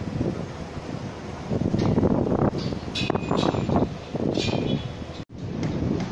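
Wind buffeting the microphone in irregular gusts over the steady noise of a construction site with machinery running, with a few short metallic clatters in the middle.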